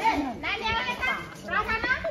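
Children's high-pitched voices calling out in two bursts, with other voices around them.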